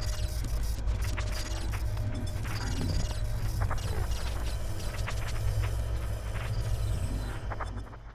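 News show title sting built from sound effects: a steady low rumble under quick mechanical clicking and ticking, fading out at the end.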